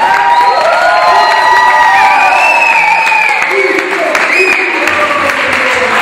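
A small group of young people cheering and clapping, several voices shouting at once over the applause.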